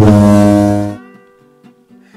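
A low buzzer sound effect sounds loud and steady for about a second, then cuts off, over soft acoustic guitar music.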